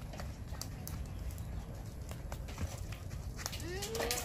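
Small hollow plastic balls clicking as they bounce and land on packed dirt, scattered light ticks over a steady low rumble. A voice calls out, rising in pitch, near the end.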